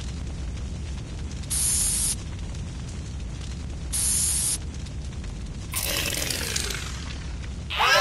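Animated spray-can hiss in two short bursts, about a second and a half in and again at four seconds, over a steady low rumble. Near six seconds a longer rushing noise with a wavering pitch sweeps in for about two seconds.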